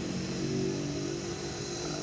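A steady droning hum at one held pitch, most plainly heard about a third of a second in until near the end, like a vehicle engine running.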